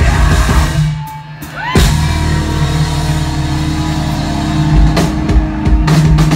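Rock band playing live through a club PA, with electric guitars and drum kit. The music dips about a second in, then a sharp full-band hit leaves a held chord ringing, with more drum and cymbal hits near the end.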